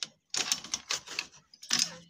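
Rapid rattling clatter of a bird cage's metal frame and wire mesh being handled: a dense run of sharp clicks about a third of a second in, and another short burst near the end.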